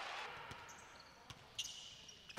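A basketball bouncing on a hardwood court, heard as a few faint thumps in a quiet, near-empty arena.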